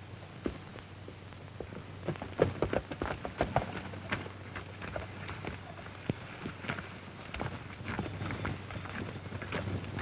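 Horses' hooves stepping irregularly on dirt, sparse at first and busier from about two seconds in. Under them runs the steady low hum and crackle of an old optical film soundtrack.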